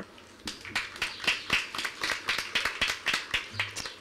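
Audience applauding: many hands clapping, starting about half a second in.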